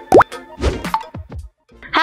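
Intro-animation music and sound effects: a quick upward pitch slide, the loudest sound, then a few shorter sliding blips and a pop. The sound drops out about a second and a half in.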